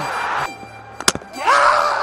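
A cricket ball chopped onto the stumps off the bat: one sharp crack about a second in, followed by a rising crowd roar.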